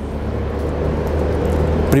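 Steady city traffic noise with a low hum beneath it.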